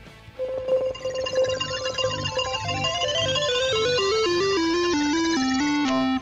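Electronic sound effect of a Dog-E robot dog quick-minting a new dog: a held beep, then a run of notes stepping steadily down in pitch while a higher sweep climbs, over a light background music beat.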